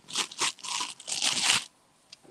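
Close rustling and crackling in several short bursts, stopping about a second and a half in, as her hands move over her shoulder and hair.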